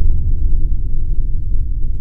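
A deep, loud rumbling sound effect for an animated title transition, with its energy all low down and no tune or speech.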